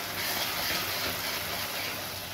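Green chillies, onions and spices sizzling steadily in hot oil in a metal kadai while being stirred with a spatula.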